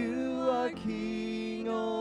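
Slow worship song: a woman's sung voice with keyboard accompaniment, holding a long, steady note through the second half.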